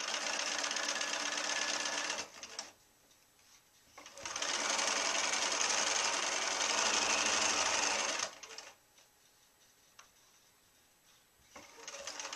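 Electric sewing machine stitching a seam through two layers of cotton quilting fabric, running in two spells: about two seconds, a short stop, then about four seconds more before it stops a little past the middle.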